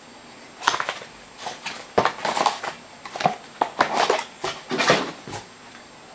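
Foil-wrapped trading card packs and their cardboard box being handled by hand: a run of irregular crinkles, rustles and light taps.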